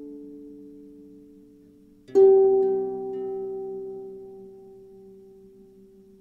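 Slow, meditative harp music. The notes of one chord fade out, then about two seconds in a new low chord is plucked and rings on, slowly dying away.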